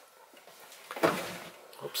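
A few light knocks and scrapes of an electric skillet being handled into an oven, the loudest about a second in.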